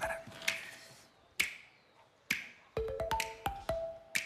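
Light comedic background music: sharp percussive clicks about a second apart, then short plucked notes and quicker clicks coming in near the end.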